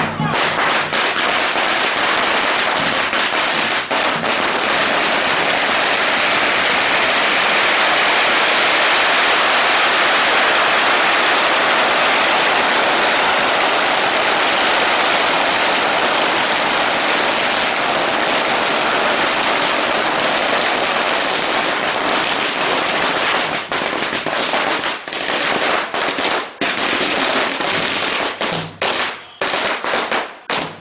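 A long string of firecrackers going off in a dense, continuous crackle. Near the end it thins out into scattered separate bangs.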